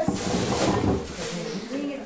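Wrapping paper rustling and crackling as a present is torn open, with people talking over it near the end.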